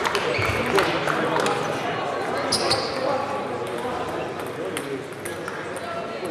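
Murmur of voices in a large sports hall, with occasional sharp clicks of table tennis balls.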